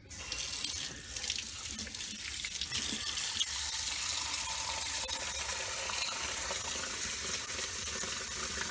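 Water tap turned on and running steadily into a sink, filling a homemade silicone mold with water.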